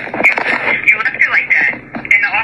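Speech: voices arguing in a phone recording.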